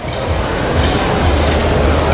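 Steady low rumble under a continuous wash of noise.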